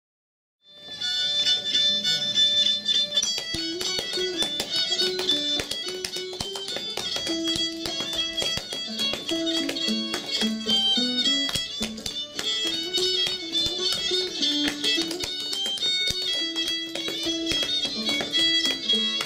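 An old-time fiddle tune with plucked-string backing starts about a second in, with the quick, sharp taps of flatfoot dancing shoes striking a wooden stage through the music.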